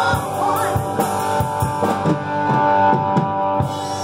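A live rock band playing, with electric guitars over a drum kit beat.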